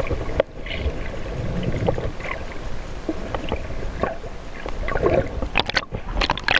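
Underwater sound at an action camera: a steady low rush of water against the housing with scattered knocks and clicks and a faint high ticking about four times a second. Near the end come clustered splashy crackles as the camera nears the surface.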